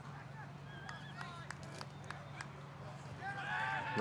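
Faint outdoor ambience at a football game: distant voices and calls, with occasional short clicks, over a steady low hum. A man's commentary voice comes in near the end.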